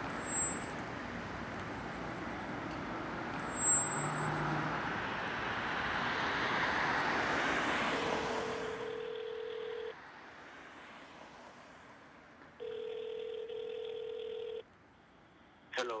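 Steady city traffic noise with a rising whoosh, then a telephone ringback tone heard through the phone's earpiece: two rings of about two seconds each, before a voicemail greeting picks up near the end.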